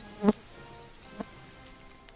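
Insects buzzing steadily, broken by a sharp click about a quarter second in and a softer click about a second in, from handling the rifle and cartridges while loading.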